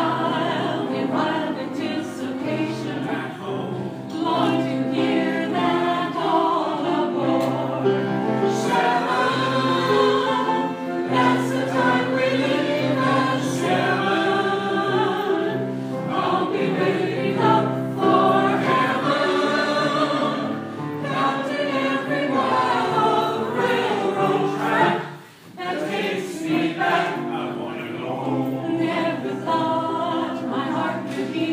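A memory-care community choir singing together, with a brief break between phrases about 25 seconds in.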